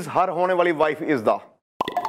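A voice repeating 'ah' over and over, each syllable rising and falling in pitch, breaking off about one and a half seconds in; a sharp click follows just before the end.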